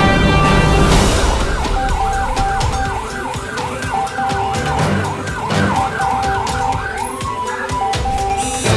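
An emergency vehicle siren in a fast yelp, rising and falling about three times a second, starting about a second in and fading near the end, over background music.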